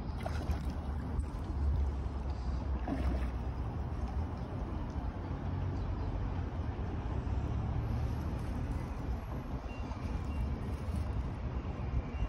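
Steady low outdoor rumble with an even background hiss, with no distinct event standing out.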